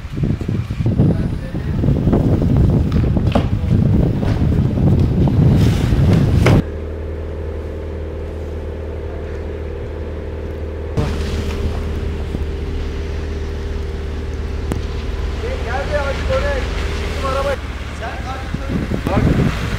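Long-handled broom sweeping snow off a pavement, a rough scraping with several sharper strokes, with wind on the microphone. About six and a half seconds in it cuts to a steady low hum with a faint held tone; faint voices are heard near the end.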